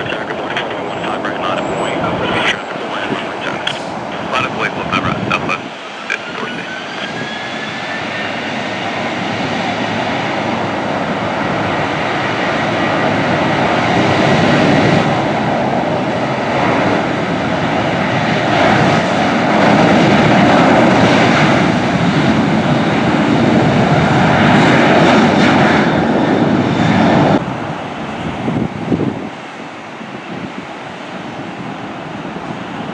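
Jet engines of a Southwest Boeing 737 spooling up to takeoff power, with a rising whine, then a loud, steady roar that builds as the aircraft rolls down the runway. The sound cuts off suddenly near the end.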